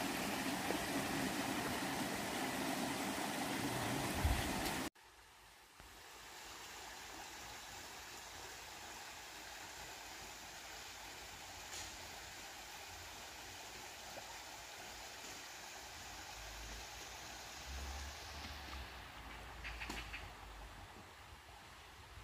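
Steady rush of a small rocky mountain stream, loud at first. After a sudden cut about five seconds in it goes on much fainter, with a few light clicks.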